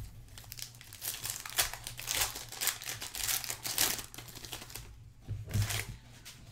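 Foil wrapper of a 2018 Gold Standard football card pack crinkling and tearing as it is opened. The rustling runs from about half a second in until about five seconds, then briefly drops away.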